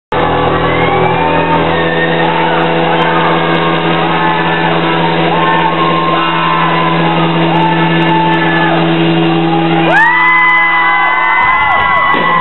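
A live rock band holds a droning chord while a crowd whoops and shouts over it. About ten seconds in, a long high wail rises and holds, and the low drone cuts off shortly before the end.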